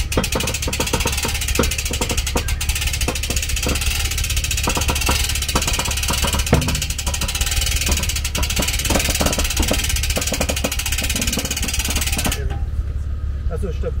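Electric boat-trailer winch running as it pulls a rigid inflatable boat up onto a tilt trailer: a steady whirr with many irregular clicks, switched on just before and cutting off suddenly near the end. A low steady hum runs underneath throughout.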